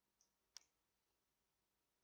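Near silence broken by a faint tick and then, about half a second in, a single sharp computer mouse click.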